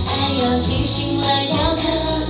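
Two female voices singing a Mandarin pop duet into microphones over a backing track.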